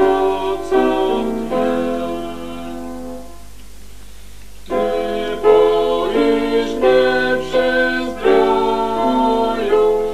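A hymn sung with keyboard accompaniment, in slow sustained chords. About three seconds in it drops to a quiet gap between phrases, then starts again abruptly a little before the middle.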